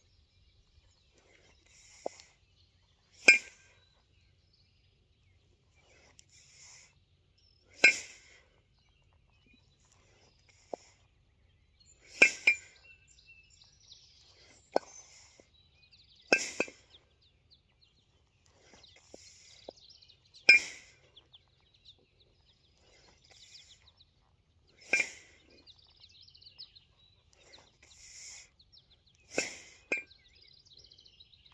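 Two 16 kg steel competition kettlebells clinking together, seven sharp metallic clinks about every four seconds as the bells drop back into the rack position between double jerks.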